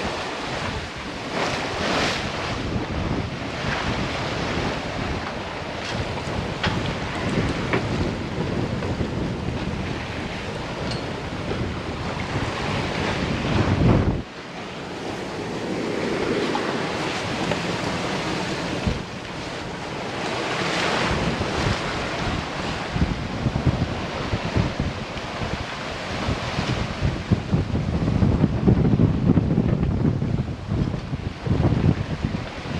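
Wind buffeting the microphone over the rush of waves and water streaming along the hull of a sailing yacht under way in a fresh breeze. The noise drops suddenly about halfway through, then builds again.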